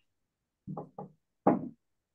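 Three short knocks about half a second apart, the third the loudest.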